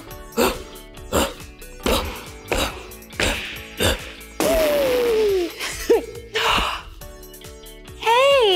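Playful background music with regular thudding beats timed to elephant stomps, then, about halfway through, a cartoon elephant trumpeting sound effect: a loud, noisy blast with a falling pitch lasting about two and a half seconds.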